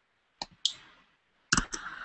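Sharp clicks from working a computer: a couple about half a second in, then a quick run of several near the end.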